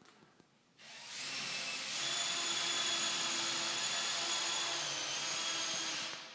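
A high-speed electric motor starts about a second in, spins up over about a second and runs steadily with a high whine, then winds down at the end.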